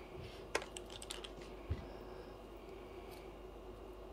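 Light clicks and taps from hands pulling curling rods out of locs: a quick run of sharp clicks in the first second and a half, then one low thump, over a faint steady hum.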